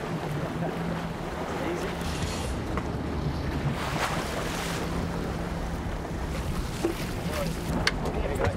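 Boat engine running steadily with a low hum, under wind on the microphone and water rushing along the hull.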